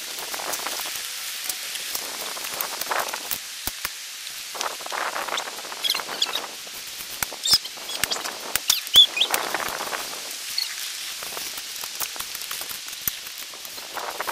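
Hand digging tools scraping and scooping through loose dirt in repeated strokes, each about a second long, with sharp clicks of the blades striking.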